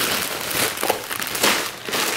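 Thin plastic shopping bag and a plastic candy bag rustling and crinkling as a large bag of candy is pulled out, with irregular crackles.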